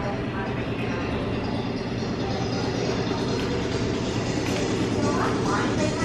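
Steady low rumble of indoor shop ambience, with faint voices in the background near the end.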